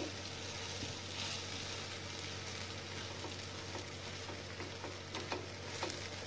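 Buttered bread sandwich sizzling steadily in butter on a hot non-stick tawa, with a few light clicks of a knife spreading butter on top near the end.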